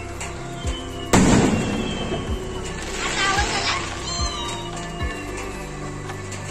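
An aerial firework rocket bursting with one loud bang about a second in, its boom dying away slowly.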